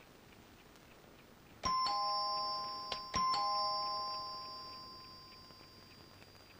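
A doorbell chime rung twice, about a second and a half apart. Each ring is a ding-dong of several clear tones that rings on and fades away.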